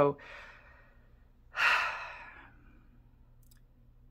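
A sigh: one breathy exhale about one and a half seconds in, fading out over about a second, over a faint steady hum.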